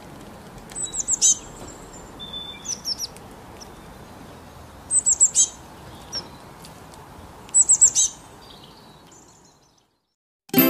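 Small songbird chirping in quick clusters of three or four high, downward-sliding notes, repeated about every two to three seconds over a faint outdoor hiss, fading out near the end.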